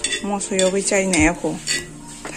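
Metal knife blade clinking and scraping on a cast-iron tawa as green chillies are turned while dry-roasting: several sharp ticks. A person's voice with gliding pitch is the louder sound over it.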